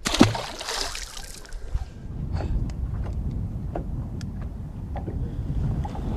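A small bass hits the water with a splash as it is tossed back, the splashing fading over about two seconds. After that there is a steady low rumble with a few faint clicks.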